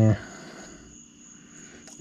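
A brief spoken "eh" at the very start, then a quiet room with a faint, steady high-pitched whine.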